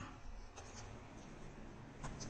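Faint room noise in a pause, with a few soft rustles about half a second in.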